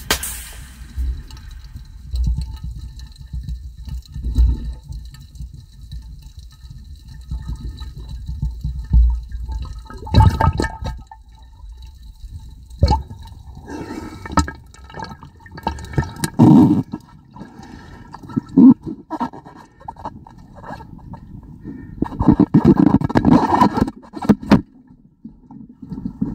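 Water noise picked up by a camera underwater: a muffled low rumble with soft pulses. About ten seconds in, irregular splashing and sloshing of water close to the microphone begins.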